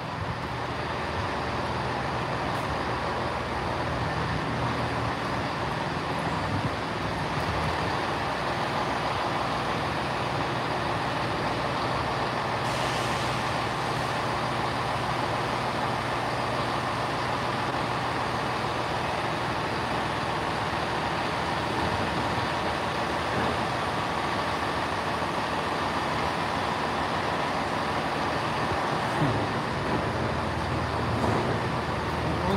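Diesel engines of a Class 158 diesel multiple unit idling at a platform, a steady rumble with a low hum. A short hiss of air comes about halfway through.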